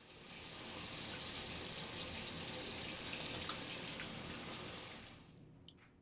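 Water running steadily from a bathroom sink faucet into the basin as hands are washed under the stream; it fades out about five seconds in.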